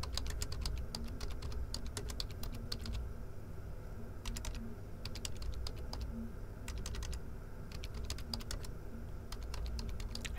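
Typing on a computer keyboard: bursts of rapid key clicks with short pauses between words, including a brief pause about three seconds in.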